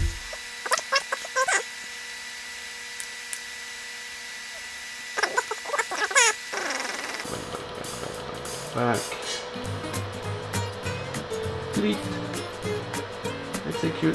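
Keys clicking on an HP 9825 desktop computer's keyboard as a message is typed in, over a faint steady hum; a short voice-like sound comes about five seconds in. Background music with a steady beat starts about halfway through.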